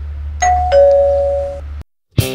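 Two-tone doorbell chime, ding-dong: a higher note and then a lower one, ringing on for about a second over a steady low rumble, with everything cutting off suddenly just before the end.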